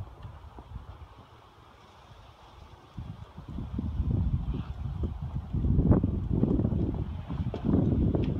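Wind rumbling on the microphone, then from about three seconds in, irregular low thumps of footsteps and handling noise from the phone as the person walks.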